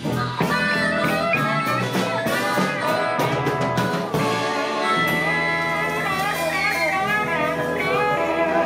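Amplified blues harmonica cupped against a handheld microphone, playing held and bending notes over a live band with bass guitar and drums.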